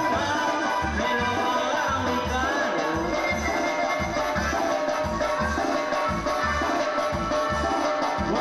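A band playing Latin dance music, with a steady low bass beat and melody lines over it.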